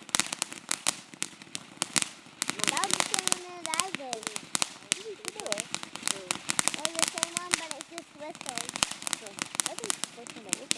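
A ground fountain firework spraying sparks, with a dense, irregular crackle of sharp little pops throughout.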